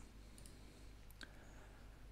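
Near silence with a few faint computer mouse clicks; the clearest comes a little past a second in.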